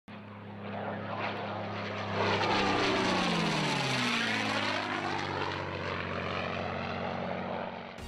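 Propeller-driven airplane flying past: a steady engine and propeller drone that swells to its loudest from about two seconds in, then slowly eases off.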